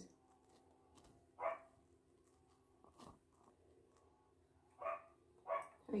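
Three short, faint yelp-like sounds: one about a second and a half in, then two close together near the end, over a faint steady hum.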